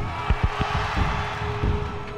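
Background music: a held note with a few low drum hits.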